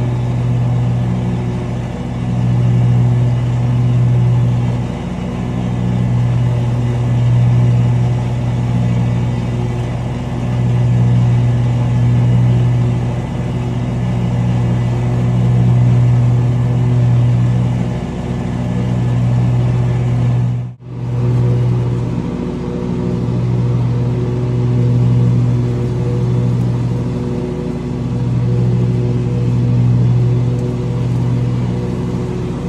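Engine of a zero-turn riding mower running steadily under way, heard from the operator's seat, its hum rising and easing every couple of seconds. The sound drops out for a moment about two-thirds of the way through.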